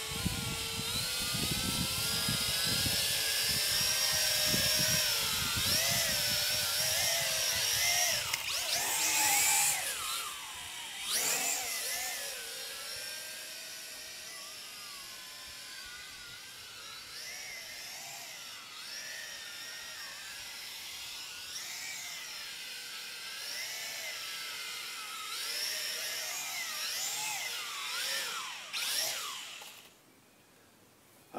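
Small toy quadcopter's electric motors and propellers whining in flight, the pitch wavering up and down as the throttle is corrected, louder at first and fainter as it moves away, then stopping just before the end as it lands. Wind rumbles on the microphone during the first ten seconds or so.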